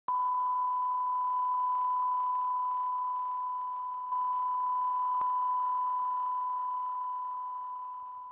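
Line-up test tone that accompanies colour bars at the head of a video tape: a single steady high-pitched beep at one pitch, over a faint hiss, with one faint click about five seconds in.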